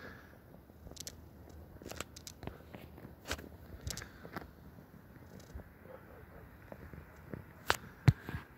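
Faint, irregular clicks and rustles, a dozen or so, over quiet outdoor background noise; the sharpest click comes near the end.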